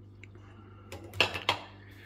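Three quick, light clicks or knocks in the second half, over a steady low hum.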